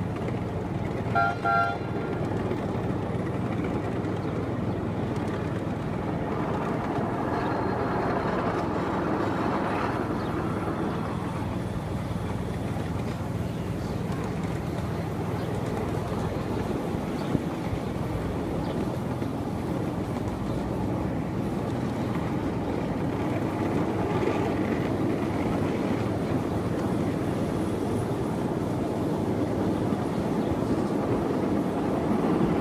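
Miniature ride train running steadily along its track with a low rumble and hum. It sounds two short toots about a second in, and there is a single sharp click about halfway through.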